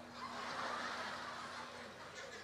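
A single guitar note rings on faintly and dies away near the end, over a soft murmur of audience chatter and laughter.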